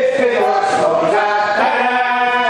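Several voices singing a folk song together in long held notes.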